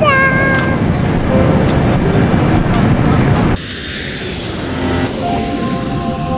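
Jet airliner cabin noise, a steady dense rush, opening with a short high-pitched child's voice. About three and a half seconds in it cuts to a softer airy whoosh, and sustained musical notes come in near the end.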